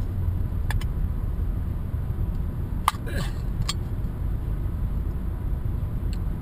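Steady road and engine rumble inside a moving car's cabin, with a few small clicks and one sharp metallic snap about three seconds in as a pull-tab food can is opened.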